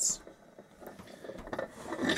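Flywheel and crankshaft of a bare Briggs & Stratton small engine turned by hand, giving a faint mechanical whir.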